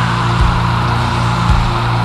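Heavy stoner/doom metal: distorted guitar and bass holding low sustained notes, with two low drum hits about a second apart.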